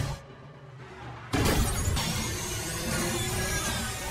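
Music, dipping briefly and then broken a little over a second in by a sudden loud crash; the dense, loud sound carries on after it.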